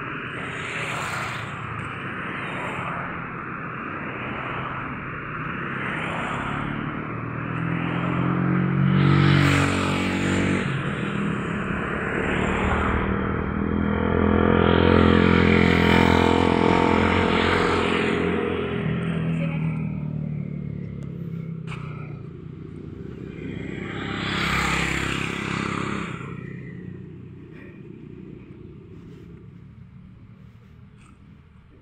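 Road traffic passing: cars and motorcycles drive by with a steady engine and tyre noise. The loudest passes come about nine and fifteen seconds in, and another about twenty-five seconds in, before the traffic fades near the end.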